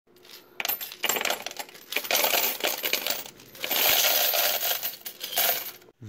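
Loose euro coins poured from a glass jar onto the stainless-steel tray of a coin-counting machine, clattering and clinking in several waves with short pauses between pours.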